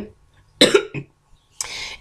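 A woman coughs once, short and sharp, about half a second in, with a smaller catch in the throat just after. Near the end she takes an audible breath in.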